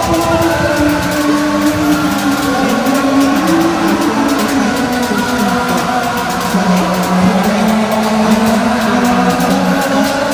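Raw black/speed metal recording: heavily distorted electric guitars hold low riff notes that step up and down in pitch, over a dense wash of drums and cymbals.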